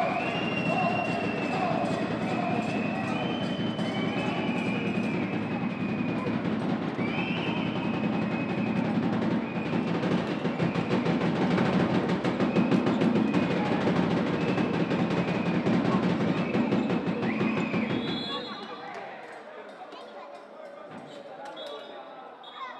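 Loud drumming and percussion mixed with voices and a repeating high melodic line, which drops off sharply about 18 seconds in. A few short high tones sound near the end.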